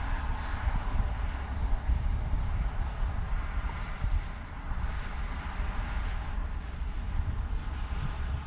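Wind buffeting the microphone, over a steady distant rumble of traffic or engine noise.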